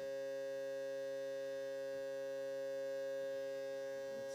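Doepfer VCO's triangle wave hard-synced in a modular synthesizer, sounding as a steady electronic tone with many overtones that holds one pitch throughout.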